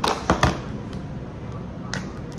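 Sharp knocks of a metal fish tin and its cardboard box being put down on a kitchen worktop: three in quick succession at the start, then one more near the end.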